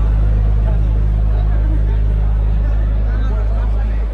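A live rock band holds one deep, steady low note through the hall's PA for about four seconds, dying away at the end, between big ensemble hits; voices in the audience are faintly heard above it.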